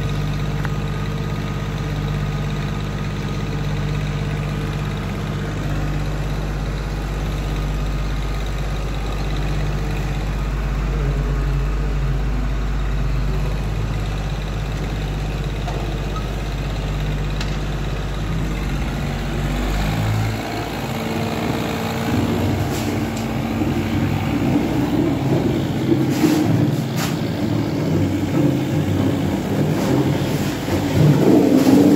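Engine of a trailer-mounted screed pump running steadily as it works. About twenty seconds in, the low drone gives way to a rougher, noisier rush with a few sharp knocks.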